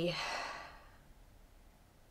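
A woman's voice trailing off into a soft, breathy sigh that fades out within about a second, leaving quiet room tone.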